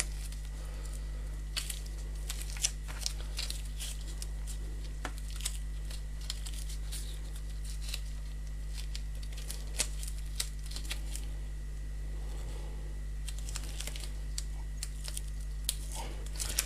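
Scattered small clicks and soft rustles of latex-gloved hands handling a plastic BIC pen tube while packing two-part putty into it, over a steady low hum.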